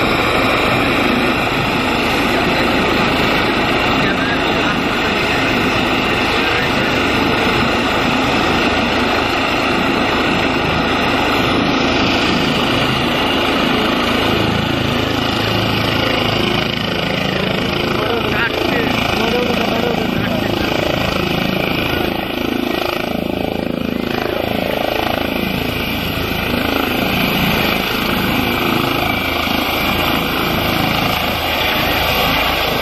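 Eurocopter EC135 (Airbus H135) twin-turbine helicopter running with its main rotor turning on the pad, a loud steady turbine and rotor noise. It lifts off into a low hover in the second half.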